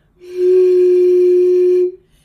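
Glass bottle partly filled with water blown across its mouth like a flute, sounding one steady note held for about a second and a half, with breathy hiss over it. The note's pitch is set by how much water is in the bottle.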